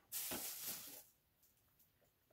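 A short rustle of the paper poster wrap being handled on the cardboard bundle box, lasting about a second before it goes quiet.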